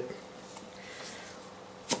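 Faint rubbing of fingers on the 2010 Mac mini's round black bottom cover as they try to twist it, the cover not yet turning.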